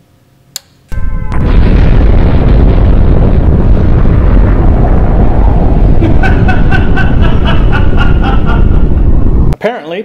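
A small metal guitar mini-toggle switch clicks once. About a second later a loud nuclear-explosion sound effect begins: a sustained, deep rumbling blast lasting about eight and a half seconds, with a pitched ringing over its last few seconds, and it cuts off abruptly.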